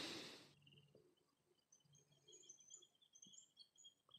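Near silence, with faint, high, repeated bird chirps through most of it.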